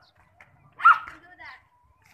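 A dog barks once, short and loud, about a second in, with children's voices around it.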